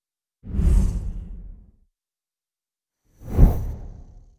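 Two whoosh transition sound effects, the first about half a second in and the second a little after three seconds, each a deep rushing swell that fades away over about a second, with dead silence between them.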